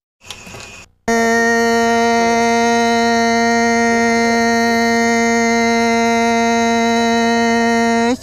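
A loud, steady electronic tone held on one unwavering pitch with many overtones. It starts abruptly about a second in.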